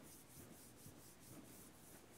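A man's palms rubbing slowly together, faintly.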